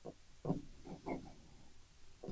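Jinhao 51A fine-nib fountain pen writing on notebook paper: a handful of short, faint scratches as the nib makes the strokes of a word, the loudest about half a second in.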